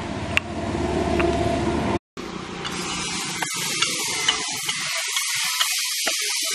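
Light clicks and scrapes of a perforated steel ladle against a steel pot as cooked rice is scooped out, over a steady hiss.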